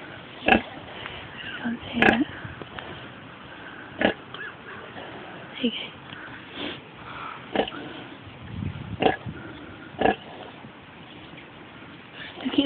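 A sow grunting in short, sharp grunts, about eight of them a second or so apart, as she lies farrowing with her newborn piglets.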